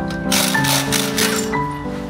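Background music, with a loud burst of rapid rattling from a pneumatic impact wrench on a car's wheel nuts. The burst starts about a third of a second in and lasts just over a second.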